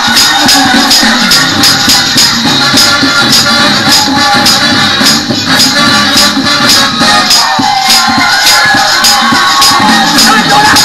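Up-tempo gospel choir music: voices singing over a fast, steady jingling percussion beat, about four strokes a second.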